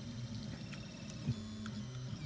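Reach 3D printer running a print: its stepper motors move the hotend and bed with a faint, steady hum and thin whine.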